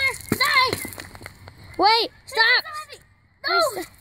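Young girls' high-pitched voices in a handful of short exclamations, with a single sharp knock just after it begins.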